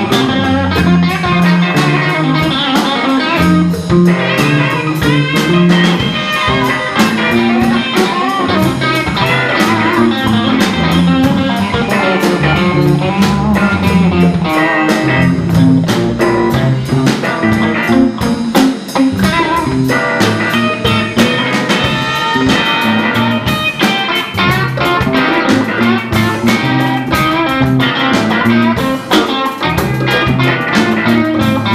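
Live blues band playing: an electric guitar carries the lead over electric bass and a drum kit keeping a steady beat.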